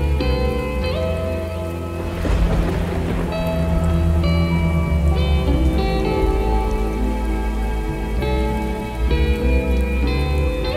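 Slowed, reverb-heavy lofi remix of a Hindi film ballad, with long sustained notes over a heavy low end and a rain sound layer mixed in. About two seconds in there is a swell of noise with a deep rumble.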